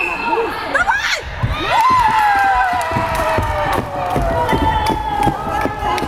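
Children shouting and cheering after a goal, with one long, high-pitched scream starting about two seconds in and slowly falling in pitch.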